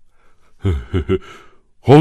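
A man's short breathy laugh in three quick pulses about halfway in, followed by a spoken word near the end.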